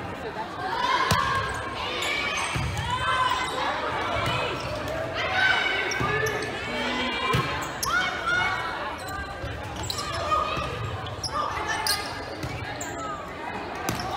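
Indoor volleyball rally in a gym: the ball is struck several times with sharp thumps during play, over players' calls and crowd voices that echo in the large hall.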